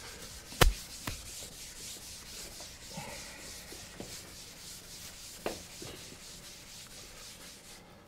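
Felt eraser being rubbed back and forth across a chalkboard, a steady scratchy rubbing made of repeated strokes. A sharp knock sounds just over half a second in, with fainter knocks later.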